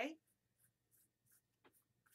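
Faint, short scratchy strokes of a flat paintbrush laying acrylic paint across crumpled brown paper-bag paper, about three strokes a second.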